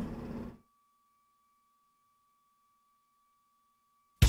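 Faint studio room tone that cuts off abruptly about half a second in, leaving near silence with only a faint, steady high tone.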